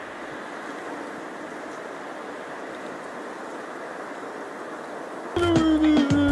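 Steady rushing noise of a large wooden sculpture burning as a bonfire. About five seconds in, music with a low beat and held tones comes in louder.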